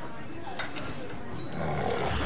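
A big cat's roar used as a sound effect, swelling in the last half second.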